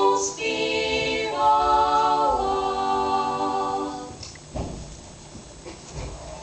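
Three female voices singing a cappella in close harmony, the closing phrase gliding down into a held final chord that dies away about four seconds in. A soft low thud follows.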